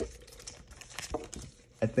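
Pokémon trading cards and their foil pack wrapper being handled: faint crinkling and a few light clicks, then a man's voice comes in near the end.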